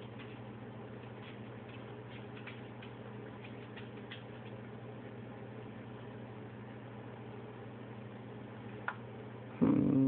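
Quiet room tone with a steady low electrical hum, and a few faint crackles of the candy bag's plastic wrapper being handled, mostly in the first few seconds and once more near the end.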